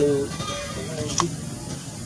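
Short wavering pitched cries at the start and again about half a second in, with a single sharp click just past a second.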